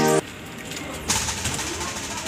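Background music cuts off abruptly just after the start. A quieter garden background follows, with a dove cooing and a brief rustling noise about a second in.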